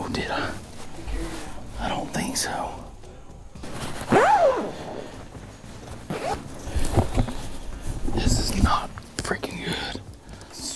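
Hushed, whispered talk between a few people in a small enclosed hunting blind, with brushing of clothing as someone passes close to the microphone at the start.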